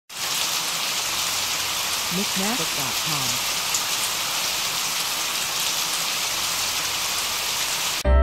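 A steady, even hiss of noise, with a short voice-like sound of gliding pitch about two seconds in. The hiss stops abruptly at the end.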